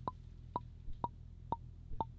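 Intellijel Plonk physical-modelling percussion voice struck about twice a second, each hit a short pitched plonk. Its pitch glides slowly downward from note to note because the Teletype's CV output has a long slew time set, so the pitch slides smoothly rather than stepping through notes.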